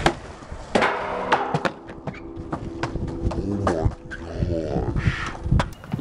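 Skateboarding on concrete: a board grinding along a metal handrail, with several sharp clacks from pops and landings, and wheels rolling between them.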